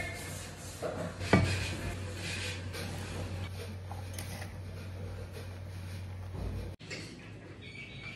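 Diced bottle gourd being scraped off a wooden chopping board and tumbling into an aluminium pot, with rustling and light clattering of the pieces and a sharp knock about a second in. A low steady hum runs under it and cuts off abruptly near the end.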